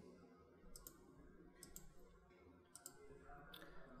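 Near silence with a handful of faint, scattered computer mouse clicks.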